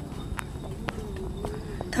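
Footsteps on a walkway: sharp taps about every half second, with faint crowd chatter behind.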